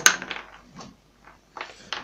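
Lead buckshot pellets tied on a string knocking and clinking against the workbench as they are handled. One sharp click comes right at the start and is the loudest sound, followed by a few lighter clicks and some rustling near the end.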